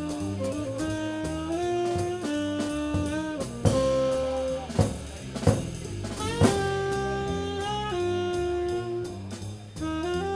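Live jazz trio of saxophone, upright double bass and drum kit playing. The saxophone carries a melody of long held notes over a moving bass line, and several sharp drum and cymbal hits land in the middle.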